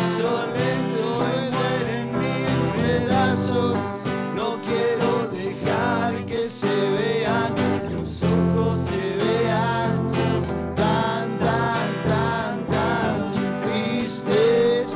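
Live band music with no words: acoustic guitars strumming chords under a bending lead melody line, as an instrumental break between sung verses.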